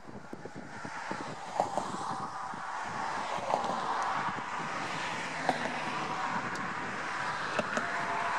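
A car driving along a road: steady road and tyre noise that builds over the first few seconds, with a few light clicks.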